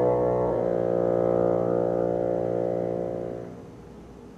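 Bassoon holding a long low note, moving to a second note about half a second in, which fades away after about three and a half seconds.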